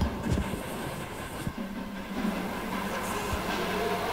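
Outdoor field-feed ambience: a steady rumbling noise with scattered low knocks and a faint low hum that sets in about a second and a half in.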